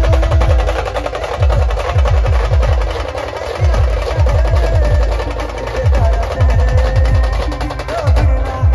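Loud procession band music played through the loudspeakers of a band truck: heavy bass-drum beats in quick runs under a held, wavering melody line.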